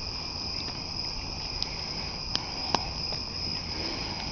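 A steady chorus of crickets, with a wood campfire burning in a metal fire ring and giving two sharp pops a little past halfway.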